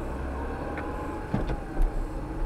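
Steady low engine and road noise heard from inside a moving car, with a couple of brief sharp sounds a little after the middle.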